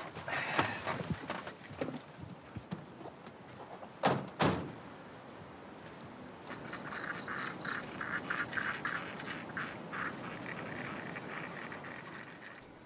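A car door shuts with a single thud about four seconds in. A little later a bird calls a quick run of about a dozen short falling notes.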